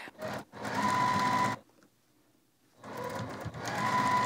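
Juki TL2000Qi sewing machine stitching a seam: a brief burst, then two steady runs of about one and one and a half seconds with a pause of about a second between them.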